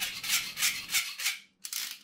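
A small blade scraping leftover 3D-printing material off a plastic 3D-printed part, in short rasping strokes about three a second. A brief pause comes after about a second and a half, then one more stroke.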